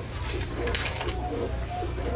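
Light handling sounds with a brief clink of small containers, about three quarters of a second in, over a steady low electrical hum.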